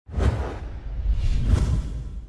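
Whoosh sound effect with a deep low rumble under it, coming in suddenly, swelling to its loudest about one and a half seconds in, then fading away: an end-card logo transition effect.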